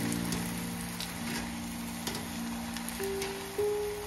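Oil sizzling and crackling as battered spinach fritters deep-fry in a kadhai, under background music of slow, held notes.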